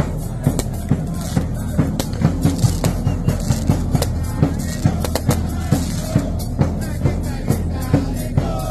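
Football supporters' band drums, large bass drums (bombos) among them, beating a steady, driving rhythm with the crowd's voices underneath.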